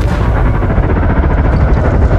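Lotus Evija electric hypercar spinning its tyres in a smoky burnout: a loud, rough, noisy rush of tyre noise.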